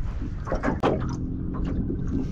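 A few clicks and knocks in a small open boat over a steady low rumble, with a short steady hum in the second half.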